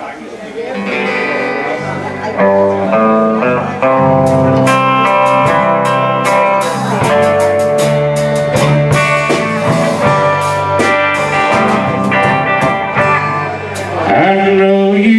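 Live country band playing a slow song's instrumental intro on acoustic guitars, bass guitar and drums, coming in softly and filling out over the first few seconds.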